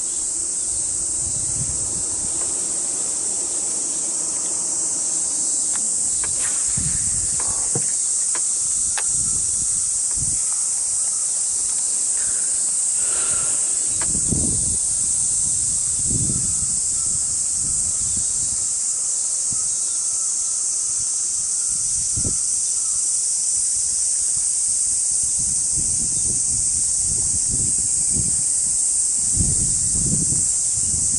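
A steady, high-pitched insect chorus from the wooded banks of a summer reservoir, running without a break. A few short low thumps and rumbles from wind and handling come through, mostly midway and near the end.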